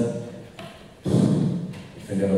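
A man's voice through a microphone: after a short pause, a brief loud utterance about a second in.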